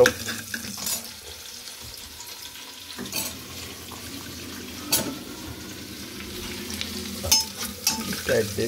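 Sliced onions and spices sizzling in hot oil in a pressure-cooker pot. A metal slotted spoon gives a few sharp clicks against the pot.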